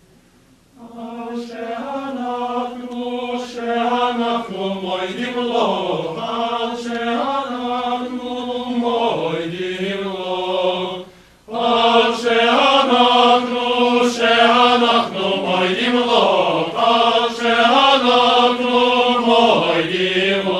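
Male synagogue choir singing. It starts softly after a moment's silence, breaks off briefly about eleven seconds in, then comes back louder.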